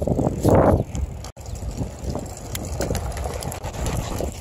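Wind and road noise on a phone microphone carried on a moving bicycle over asphalt, rough and uneven, with a louder breathy rush about half a second in. The sound cuts out for an instant just after a second in.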